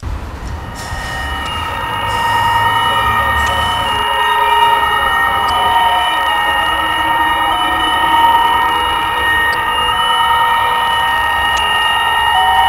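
Horror-film sound design: a loud, shrill screeching drone of several steady high tones held together over a low rumble, the rumble thinning about four seconds in.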